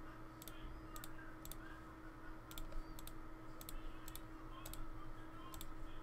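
Faint computer mouse clicks, about a dozen at irregular intervals, many heard as a quick double tick of button press and release, over a steady low hum.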